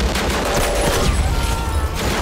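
Rapid gunfire, bursts of shots packed close together, in a loud, dense action soundtrack with a deep rumble underneath.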